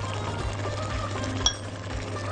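A pot of spinach stew bubbling on the stove, with a metal spoon clinking once against the pot about one and a half seconds in as pepper is added.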